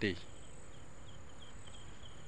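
Insects chirping: faint short, high chirps repeating several times a second over a faint steady high-pitched buzz.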